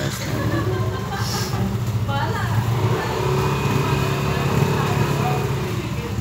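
Motor scooter engine running, a steady low hum, with people talking in the background.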